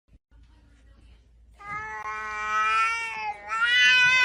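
Domestic cat yowling: a long drawn-out call starting about one and a half seconds in, then a brief break and a second long call near the end.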